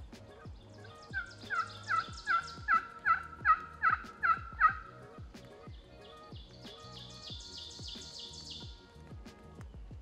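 A series of about nine loud, evenly spaced turkey yelps, roughly two a second, followed by a higher, quieter and quicker run of notes. Faint background music with a steady beat runs underneath.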